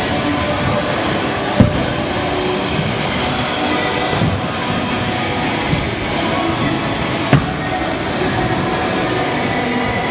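Stunt scooter wheels rolling over skatepark ramps in a steady rumble, with two sharp clacks, about a second and a half in and again around seven seconds in. Music plays in the background.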